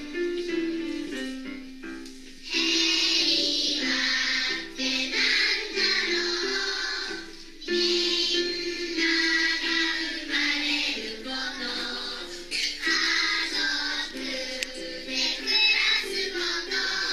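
A group of young children singing a song together to upright piano accompaniment. The piano plays alone for the first two seconds or so before the children's voices come in.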